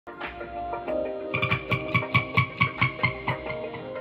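Electric guitar with effects played along to a backing track. A quick, steady beat comes in about a second in and drops out shortly before the end.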